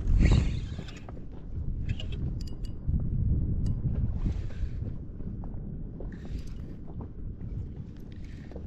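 Wind rumbling on the microphone and water moving around a small inflatable boat, with a few faint sharp clicks from about two seconds in while a spinning reel is wound in against a hooked fish.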